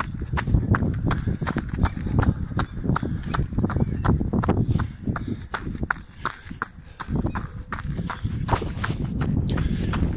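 Running footsteps on an asphalt path, a steady beat of about three strides a second, softer for a moment near the middle. Wind buffeting the microphone and the handling of a hand-held camera add a constant low rumble.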